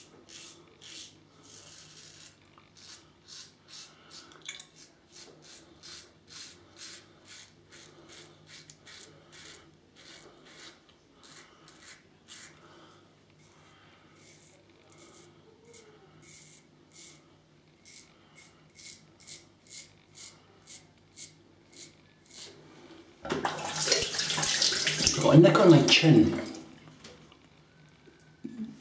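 Edwin Jagger 3ONE6L stainless steel double-edge safety razor with a Wizamet Super Iridium blade cutting lathered stubble in short rasping strokes, about two a second, on a pass across the grain. About 23 seconds in, a water tap runs loudly for about three seconds.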